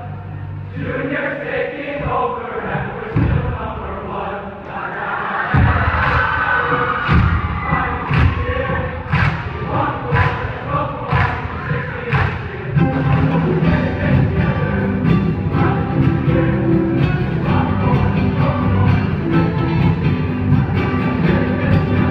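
Large male choir chanting and singing with a live rock band. From about five seconds in, loud drum hits land about once a second, then the full band plays on steadily under the voices.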